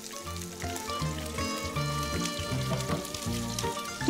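Floured zander (pike-perch) pieces sizzling as they fry in hot vegetable oil in a pan. Background music with held notes plays over it.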